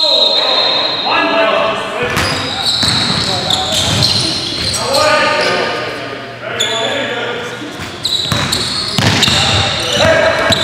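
Basketball game sounds in a gym: players' voices calling out over a basketball bouncing on the hardwood floor, with short sharp knocks through it.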